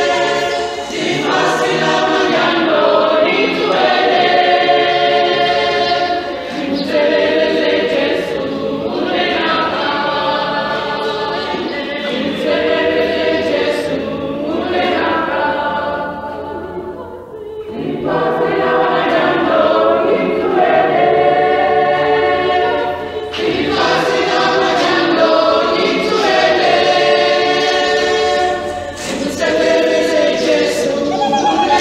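A church choir of many voices singing a hymn unaccompanied, in long phrases with short breaks between them; the singing dips to its quietest about seventeen seconds in before swelling again.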